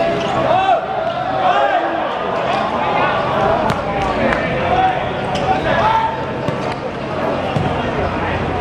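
Players and onlookers shouting over one another during goalmouth play in a football match, with several sharp thuds of the football being kicked.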